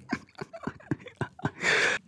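A man laughing right up against the microphone in short breathy pulses, about four a second, ending in a longer rush of breath near the end.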